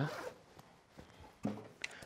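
Faint handling sounds: a jacket zip being pulled and clothing rustling, with a few light clicks and knocks as a classical guitar is lifted.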